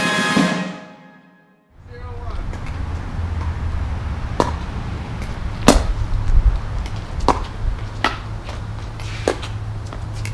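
Pickleball rally: about five sharp pocks, a second or so apart, of paddles hitting the plastic ball, over a steady low rumble. Music fades out just before the game sound begins.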